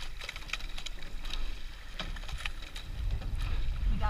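Sweep-oar rowing shell under way: sharp clicks and clunks of the oars working in their oarlocks and the blades in the water, over a low wind rumble on the microphone that grows louder near the end.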